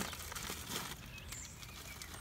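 Faint outdoor background noise with a low rumble and a few light clicks.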